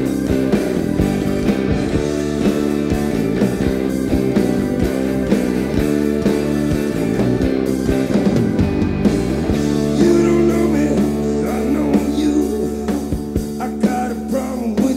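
Rock band playing live: electric guitar and keyboards hold sustained chords over a steady drum beat, in an instrumental passage before the vocals come in.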